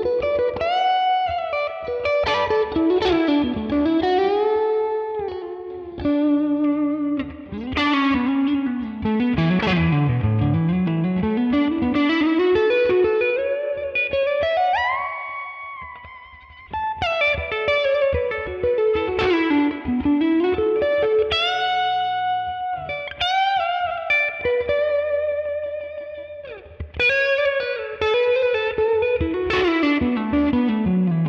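Stratocaster electric guitar played through the Neural DSP Tone King Imperial MKII tweed amp plugin on an edge-of-breakup setting. It plays a blues lead of single notes with bends and slides, with a long held note bent upward near the middle.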